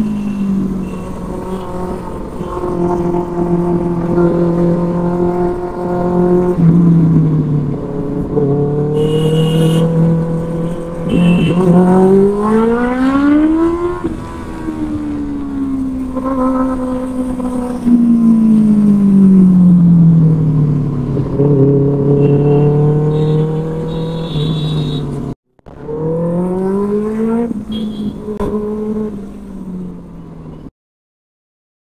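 Benelli 600i inline-four motorcycle engine with a loud exhaust, heard from the rider's seat while riding. The note climbs on the throttle and falls away as it is rolled off, several times over, with a steady low drone in between. The sound cuts out for a moment about 25 seconds in.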